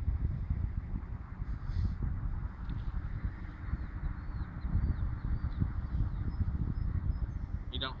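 Wind buffeting the microphone, a steady low rumble, with a few faint high bird chirps in the second half.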